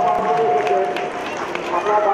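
Live Baul folk performance: a long held note that breaks off about a second in, with sharp hand-percussion strokes through it and a voice sliding in pitch near the end.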